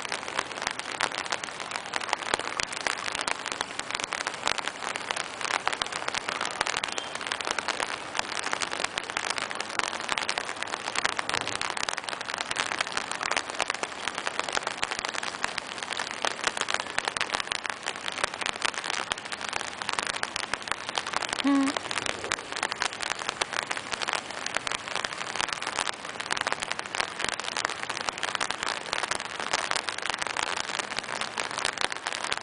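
Light rain pattering on an open umbrella held just over the microphone: a dense, steady stream of tiny drop ticks. A single brief pitched call or squeak cuts through about two-thirds of the way in.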